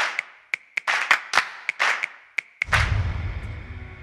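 Animated title-card sound effects: a quick, irregular run of about a dozen sharp percussive hits and swishes, then a sudden deep boom that slowly fades.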